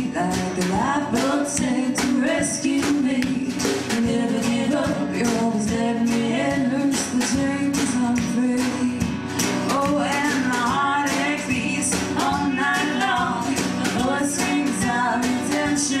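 A live country band playing a song: strummed acoustic guitar and bass over a steady beat, with singing.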